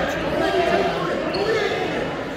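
Indistinct voices calling out, echoing in a large gym hall.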